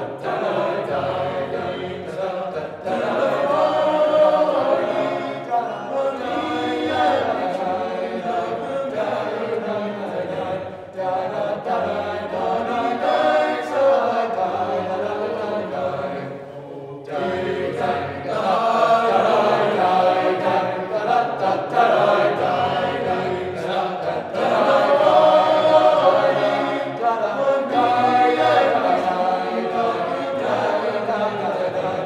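Tenor-bass choir of high school boys singing, with a brief pause a little past halfway before the voices come back in.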